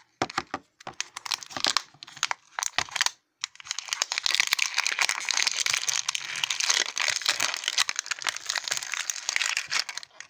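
Plastic wrapper on a toy capsule bottle crinkling as fingers pick at its stubborn tear strip. There are scattered crackles for about three seconds, a short pause, then continuous crinkling until near the end.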